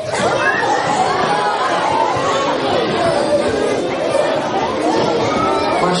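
A roomful of children's voices talking over one another at once, with a laugh at the start.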